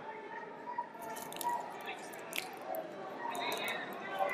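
Wrestling shoes squeaking and scuffing on the mat in a few short sharp bursts as the wrestlers scramble into a takedown, over a murmur of voices in a large hall.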